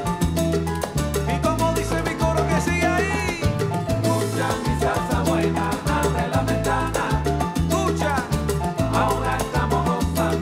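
Salsa music: bass notes stepping in a repeating pattern under steady percussion and melodic lines.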